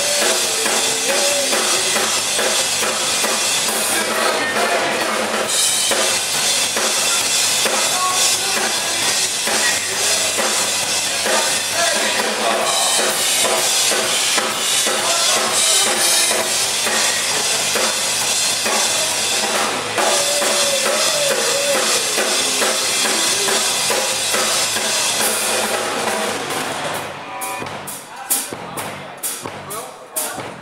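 Live rock band playing: electric guitars and a drum kit under a singing voice. Near the end the band drops away and steady drum hits carry on, about three a second, as the song winds down.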